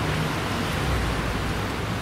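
Steady outdoor background noise: an even hiss with a low rumble underneath.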